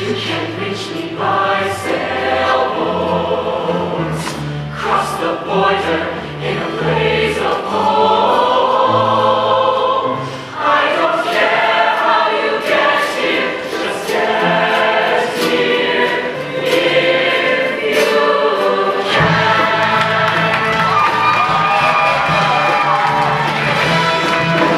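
A mixed-voice high school show choir singing a song in harmony.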